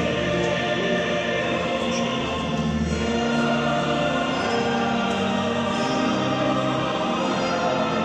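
Choral music: a choir singing long, held notes, steady and full throughout.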